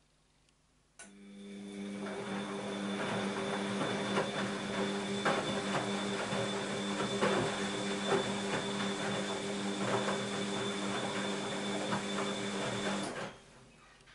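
Bosch WAB28220 front-loading washing machine tumbling its drum: the motor starts suddenly about a second in and turns the drum at a steady speed, with a constant hum and the laundry and water sloshing and thudding inside, then stops about a second before the end.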